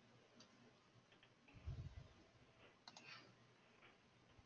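Near silence: room tone with a few faint, scattered clicks and a short soft low thump a little before the middle.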